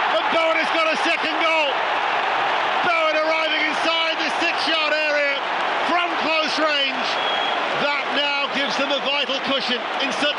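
Voices talking over a steady background of crowd noise, as in a broadcast sports clip.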